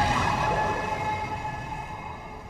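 Intro sound effect for an animated studio logo: a dense noisy wash with a few held tones above it, slowly fading.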